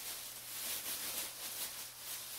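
Thin plastic shopping bag crinkling and rustling as hands dig through it and pull yarn out.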